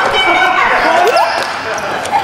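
Several voices shouting and calling out at once, echoing in a large indoor sports hall, with one rising cry about a second in.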